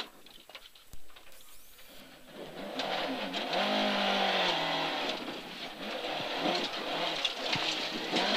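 Ford Mk2 Escort rally car's 8-valve Pinto engine, heard inside the cabin. It is low and quiet for the first couple of seconds of a handbrake turn, then picks up revs about two and a half seconds in as the car pulls away, the pitch rising and dipping before settling.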